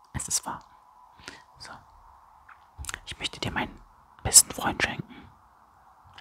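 A man whispering close to the microphone in short, broken phrases, with a faint steady hum underneath.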